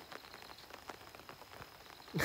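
Light rain falling on a pond surface: a faint, irregular patter of many small drops.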